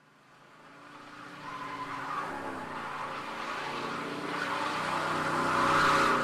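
A car, engine and skidding tyres, fading in from silence and growing steadily louder over several seconds.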